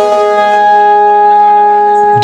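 Harmonium holding one steady chord, loud and unwavering, with no drums or singing over it.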